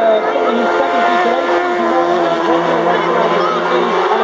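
Racing sidecar outfit's 600cc four-stroke engine running at high revs on its approach, a steady engine note under people talking.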